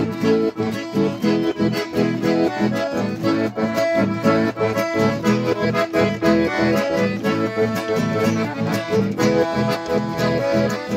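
Two diatonic button accordions and acoustic guitars playing an instrumental traditional folk tune together, the guitars strummed in a steady rhythm under the accordions' melody and chords.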